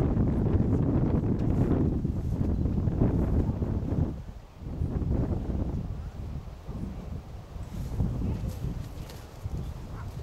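Wind buffeting the microphone: an irregular low rumble, strongest in the first four seconds, then dropping off and carrying on more weakly.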